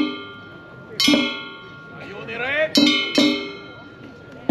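A hand-held metal gong (kane) of Japanese festival music struck three times, once about a second in and twice in quick succession near the end, each stroke ringing on. Between the strokes a voice calls out, rising in pitch.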